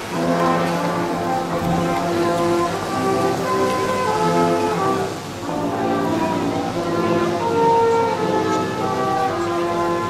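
Brass ensemble with trombones playing a slow tune in held chords, each chord sustained for around half a second to a second, over a faint steady hiss.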